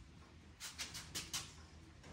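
A few faint, light taps in quick succession in the middle, from small hands patting the bare steel inner frame of a car door, over a low steady hum.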